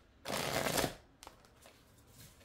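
A deck of oracle cards being riffle-shuffled by hand: one quick riffle lasting about half a second, then a few light clicks as the cards are handled.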